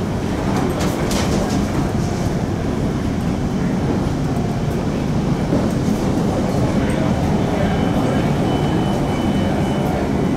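Interior running noise of a High Capacity Metro Train electric train in motion: a steady rumble of wheels on the rails heard from inside the carriage, with a few light clicks about a second in and a faint high tone from about seven seconds in.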